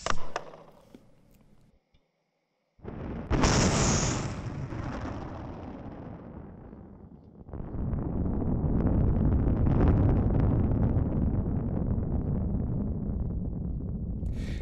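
Onboard audio from a Rocket Lab Electron booster during stage separation. About three seconds in there is a sudden bang with a hiss that slowly fades. About seven and a half seconds in a loud, steady rumble starts abruptly as the second stage's Rutherford vacuum engine fires and its exhaust hits the booster.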